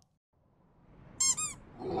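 Two quick, high-pitched squeaks, each arching up and down in pitch, about a second and a quarter in, over a whooshing swell that builds out of silence and grows louder near the end.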